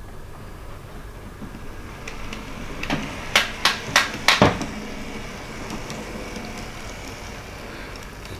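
N gauge model diesel railcar running along the track, its steady motor hum growing louder from about two seconds in. A cluster of sharp clicks comes between about three and four and a half seconds in.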